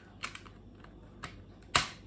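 Plastic LEGO pieces clicking as a purple gear piece is shifted and pressed onto a brown plate: a few light clicks, then one louder click near the end.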